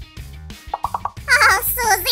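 Background music with a quick run of plopping sound effects, then a high, wavering voice from the jelly-creature character.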